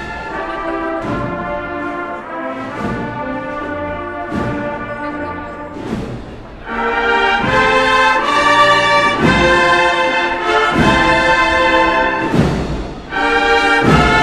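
Processional brass band playing a slow march, with a drum beat about every second and a half; the playing grows louder about halfway through.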